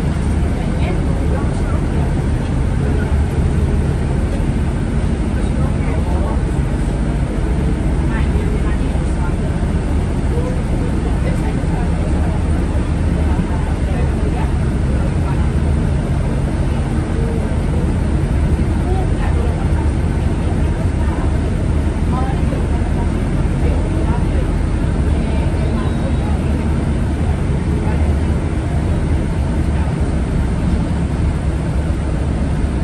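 Steady low rumble of a city bus's engine and tyres, heard from inside the moving bus, with indistinct passenger voices in the background.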